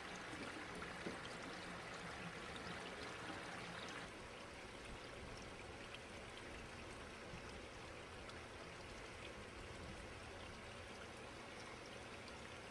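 Water trickling and splashing down through a trickle filter tower of stacked plastic crates filled with lava rock, a faint, steady pour; it gets a little quieter about four seconds in.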